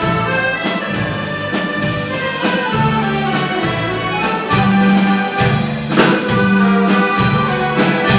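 Accordion orchestra playing popular dance music live: several accordions hold the melody in sustained chords over a pulsing bass line, with a sharp drum hit about six seconds in.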